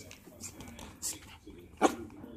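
Yorkshire terrier puppies at play, one giving a short sharp yap near the end, with a fainter brief sound about a second in.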